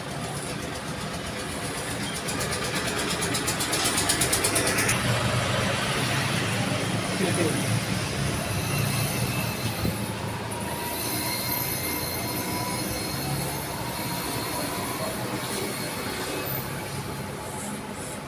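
Electric hair clipper running during a haircut. A loud, passing rumble builds about two seconds in, is strongest for several seconds and fades after about ten seconds.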